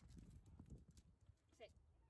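Young dog giving one short, falling whine near the end, faint, over soft scuffling of paws on concrete.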